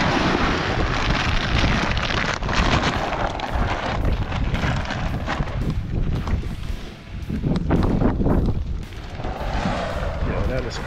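Wind buffeting the microphone: a loud, steady rumble that dips briefly about seven seconds in.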